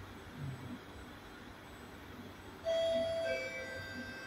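Singapore MRT train's door-closing warning chime: a short electronic chime of a few clear notes sounding suddenly about three seconds in and ringing on, over the low steady hum of the train standing at the platform.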